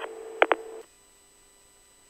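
Tail of a two-way police radio transmission: narrow-band hiss with a steady hum and two quick clicks, cutting off abruptly under a second in, then near silence.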